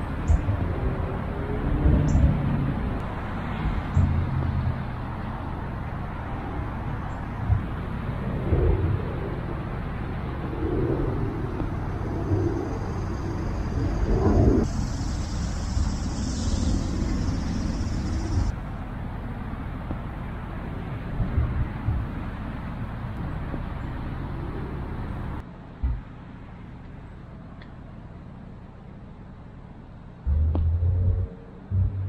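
Steady outdoor rumble with a few soft thumps scattered through it. The background drops to a quieter hiss near the end.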